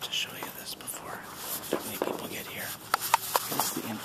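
A man whispering, with a few short, sharp clicks a little before the end.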